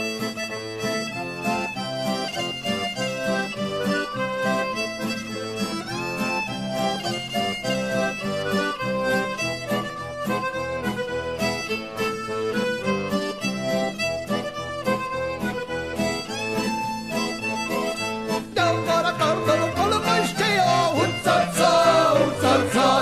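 Folk music from the Italian Romani tradition: a band plays the instrumental opening of a song with a steady beat, and singing comes in near the end.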